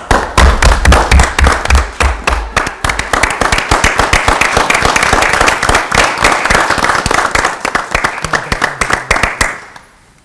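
Applause from a small group of people clapping in a room, a dense patter of hand claps that thins out and stops near the end. A few low thuds sound under the clapping in the first couple of seconds.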